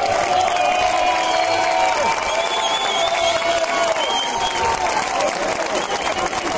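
A large crowd clapping and shouting, many voices overlapping in a steady din.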